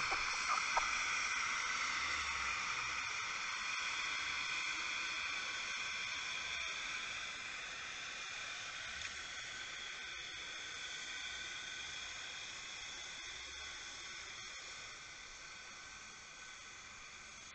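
Steady hiss picked up by an underwater camera, with no distinct events, slowly growing fainter.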